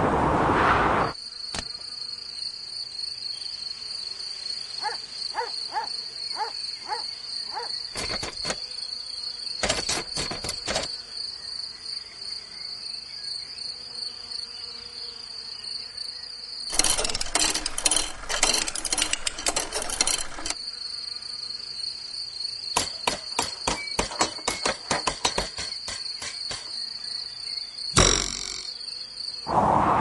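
Steady, high-pitched chirring of insects, with bursts of rapid clicking breaking in several times; the longest and loudest burst lasts about four seconds, past the middle.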